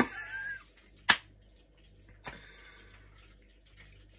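A man's short breathy laugh right after swallowing a mouthful of whisky, followed about a second in by one sharp click and a fainter one just after two seconds.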